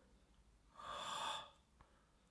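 A man's short, sharp breath, a snort-like exhale lasting under a second, near the middle.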